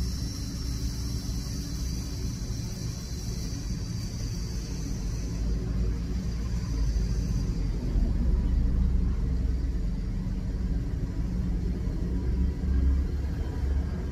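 A steady low rumble, with a faint high hiss and sizzle from an e-cigarette box mod and tank being drawn on, which fades about halfway through.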